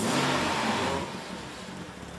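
Classic car engine revved at the exhaust, the noise dying away about halfway through.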